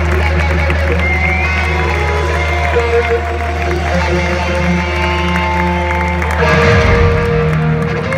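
Live stadium rock band heard from the crowd through a loud PA: lead electric guitar holding long, bending notes over a steady low bass note. About six and a half seconds in the sound swells louder and the bass changes as the song reaches its close.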